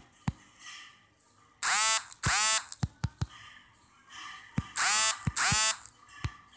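Sound effects of a mobile war strategy game: a scatter of short thuds, and four loud, rich pitched tones of about half a second each, coming in two pairs about three seconds apart.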